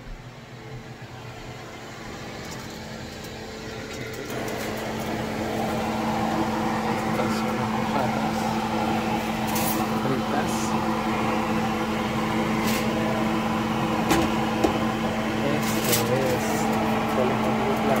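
A kitchen appliance motor humming steadily, growing louder over the first few seconds. A few light clicks and knocks of handling come in the second half.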